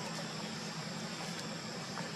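Steady outdoor background noise: an even hiss with a low hum underneath and a thin, steady high-pitched tone, broken only by a couple of faint ticks. No monkey calls are heard.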